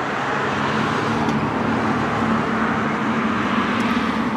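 1968 Mercury Cougar's V8 engine idling steadily with the hood open, a constant running noise with a low hum under it.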